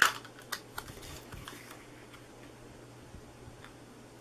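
Cardstock being handled and tapped down onto a paper treat box: one sharp click at the start, then a few softer clicks and taps within the first second and a half. After that there is only a faint steady low hum.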